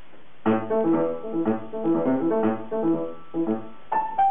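Grand piano played four hands, starting about half a second in with a steady beat of short, detached notes and chords.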